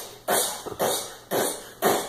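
Rhythmic panting breaths, about two a second, each a short breathy huff that starts sharply and fades.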